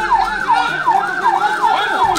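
Siren sounding a fast yelp, its pitch dipping and rising about three times a second.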